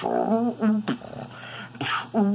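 Beatboxing: a human voice making short pitched bass notes and sharp snare-like clicks in a rhythm. Two bass notes come in the first half, a click near the middle and another near the end, with a thinner stretch between them.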